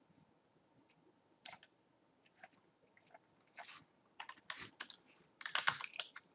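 Typing on a computer keyboard: a few scattered keystrokes, then a quicker run of keystrokes from about three and a half seconds in.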